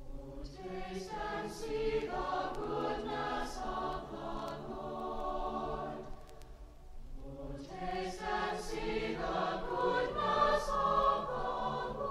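A choir singing a sacred choral setting in two sung phrases, with a brief pause for breath about six and a half seconds in.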